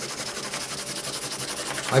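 Soft 6B graphite pencil scribbled quickly back and forth on paper, a steady scratchy rubbing. The back of a drawing is being blacked in with graphite to make a transfer sheet.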